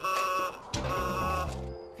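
Car horn honking twice, a short blast and then a longer one, each starting and stopping abruptly.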